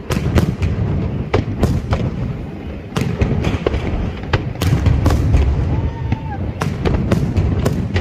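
Aerial fireworks shells bursting in quick succession, a string of sharp bangs about two a second over a continuous low rumble.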